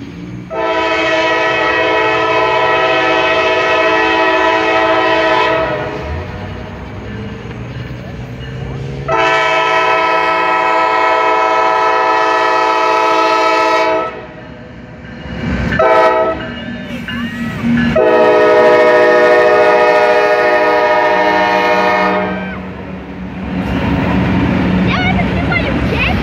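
Air horn of a Norfolk Southern freight locomotive sounding the grade-crossing signal: two long blasts, a short tap about 16 seconds in, then a final long blast. A low engine drone grows louder near the end as the locomotive draws close.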